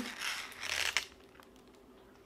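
Rustling and crinkling of a diamond-painting canvas and its plastic film cover as the sheet shifts on the table, lasting about a second.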